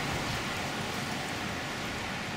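Steady, even hiss of outdoor background noise with no distinct event standing out.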